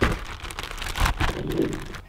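Plastic zip-top bag of flour crinkling and rustling irregularly as hands work frog legs about inside it, with a few soft knocks.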